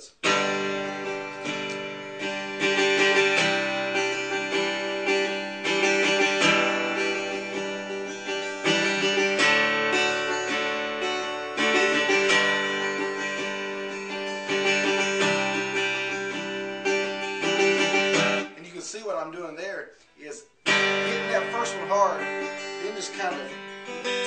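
Acoustic guitar strummed quickly up and down through a run of chords, the first strum of each group hit hard and the rest softer. The playing breaks off for a couple of seconds about two-thirds of the way through while a man speaks a few words, then resumes.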